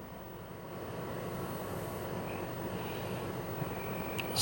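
Steady background noise with a low rumble and hiss, getting slightly louder about a second in.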